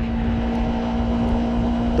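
2015 Yamaha R3's parallel-twin engine running at a steady cruising speed, holding one constant note, under a steady rush of wind and road noise.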